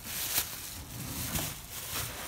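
Thin plastic bag rustling and crinkling as it is handled and lifted away, with a sharp tap about half a second in.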